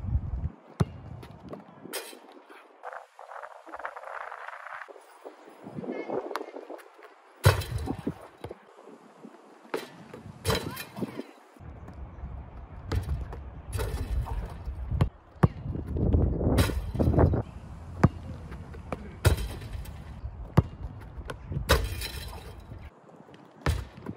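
A basketball bouncing on an outdoor court and dunks hitting a metal rim and backboard, as a dozen or so sharp, irregularly spaced impacts. Between them runs a low rumbling background, with one strong hit just before the end as the ball is slammed through the rim.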